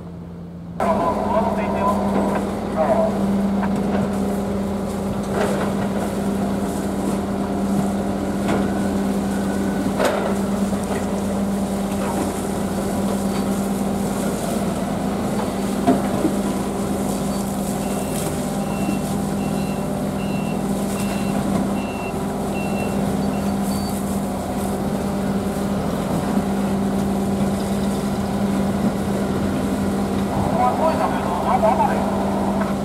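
Steady, low drone of a moored fishing boat's engine running at the quay, with plastic fish baskets knocking now and then as they are handled. A run of about six short, high beeps comes a little past the middle.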